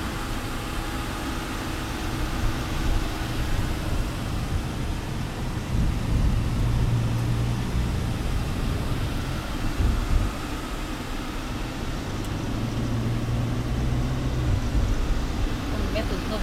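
Cabin noise of a passenger van on the move, heard from inside: a steady low engine and road rumble. The low engine hum swells twice, about six seconds in and again about twelve seconds in.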